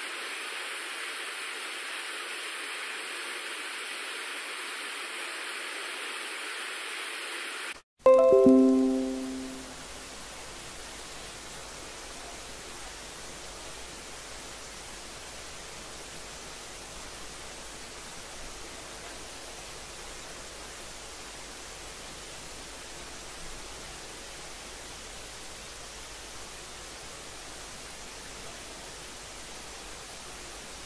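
Steady hiss of background noise, broken about eight seconds in by a brief dropout and a single loud ringing tone that fades away over about two seconds, then a quieter steady hiss.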